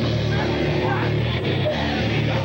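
Hardcore punk band playing live, with distorted electric guitar over the full band, loud and unbroken.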